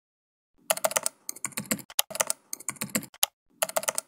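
Typing on a computer keyboard: bursts of rapid key clicks in several runs, starting about half a second in.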